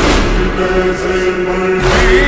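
Slowed-down, reverb-heavy noha, a Shia lament: voices chanting long held notes over a deep bass pulse.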